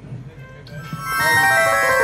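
Instrumental devotional music on an electronic keyboard comes in loud about a second in, a run of sustained notes stepping downward in pitch.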